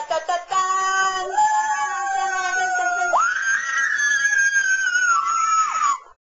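A high voice holding a long note, then jumping abruptly to a much higher note about three seconds in. The high note is held, slides down and stops just before the end.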